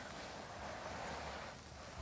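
Loose garden soil pouring out of a black plastic tub onto a heap of dirt, a steady granular hiss like rain that eases off about a second and a half in.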